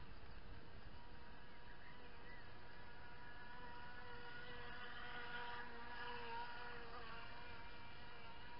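Radio-controlled model speedboat's motor whining steadily as the boat runs across the water. It grows louder past the middle, then its pitch drops slightly.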